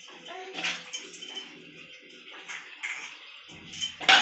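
Water splashing and hands slapping and rubbing on a baby's wet skin as water is scooped from a small bowl and poured over the baby, in several short splashes.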